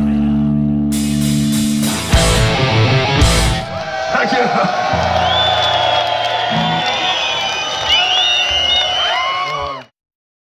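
Rock band playing live on stage, ending a song: a sustained distorted guitar chord, then heavy low hits about two seconds in. A crowd follows, cheering and whistling, until the sound cuts off abruptly near the end.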